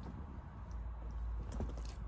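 Faint light taps and scratches of a dog's paws on the edge of a fabric sofa, over a low steady rumble.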